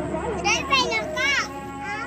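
A young child's high-pitched voice: a few quick calls that swoop up and down in pitch in the first second and a half, with no clear words.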